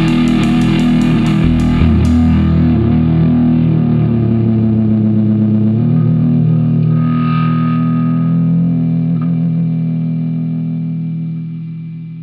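Rock band closing a song: a quick run of drum strikes in the first two seconds, then distorted electric guitar and bass hold a final chord that rings on and fades out near the end.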